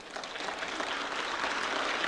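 Audience applauding, swelling over the first half second and then keeping on steadily.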